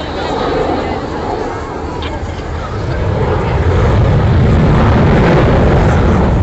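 Avro Vulcan delta-wing jet bomber flying low overhead, its four jet engines giving a deep roar that grows louder about halfway through as it passes.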